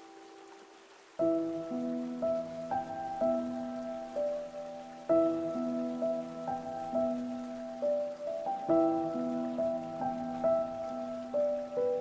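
Solo piano playing a slow, gentle melody, a new phrase of struck notes starting about a second in after a held note fades, over the steady rush of flowing stream water.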